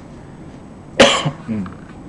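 A man coughs once, sharply, about a second in, followed by a smaller, short throat sound half a second later.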